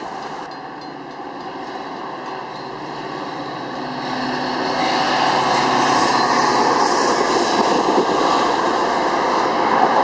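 Metra commuter train rolling across a steel girder rail bridge: a steady rolling noise from the passing cars that grows louder about halfway through and holds as the bilevel coaches go by.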